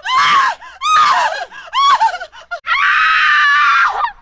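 Loud, high-pitched screaming voice: three short wavering shrieks about a second apart, then one long held scream near the end.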